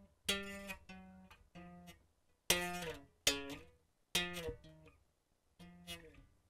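Bass guitar plucked one note at a time, picked up faintly by the microphone: about seven single notes at changing pitches, each starting sharply and dying away.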